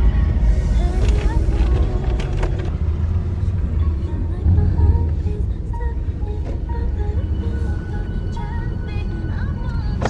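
Steady low road and engine rumble inside a moving Infiniti car's cabin, with music playing over it.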